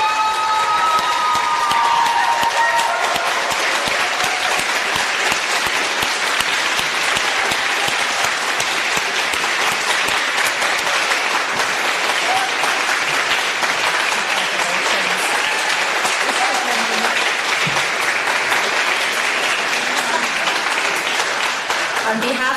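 Audience applauding steadily, with a couple of long held whoops of cheering in the first few seconds.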